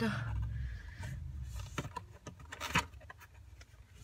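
A small box being opened by hand: a few separate clicks and scrapes of the lid and packaging.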